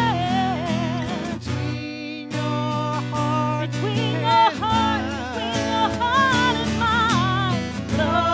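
A woman singing a slow ballad with vibrato, accompanied by acoustic guitar. The melody and accompaniment drop back briefly about two seconds in, then carry on.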